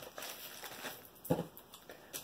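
Faint handling sounds of small items and plastic packaging being moved about on a tabletop, with one soft knock a little after a second in as something is set down.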